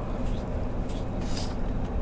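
Steady low background rumble of motor traffic, with a short soft hiss about halfway through.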